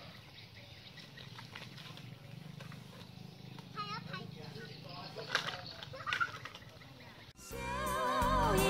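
Faint outdoor background with a low steady hum and a few brief, distant high voice calls around the middle. Background music with singing starts suddenly near the end.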